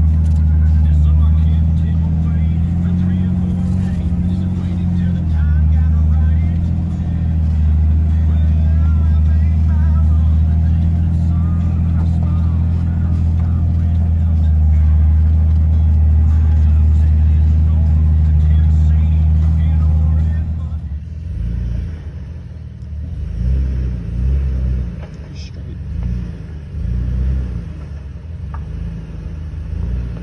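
Jeep Wrangler TJ engine running at a steady pace as heard from inside the cab while crawling up a dirt trail. About two-thirds of the way through the sound cuts to another recording, where a Jeep's engine revs rise and fall repeatedly as it climbs a rocky, muddy trail.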